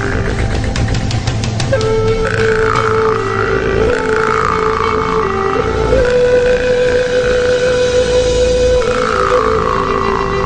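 Sakha khomus, a metal jaw harp, played at the mouth: a steady buzzing drone with an overtone that sweeps up and down above it, opening with a quick run of rapid plucks in the first two seconds.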